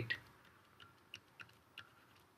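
Four faint, separate ticks of a pen stylus tapping on a tablet screen while handwriting, spaced a quarter to half a second apart.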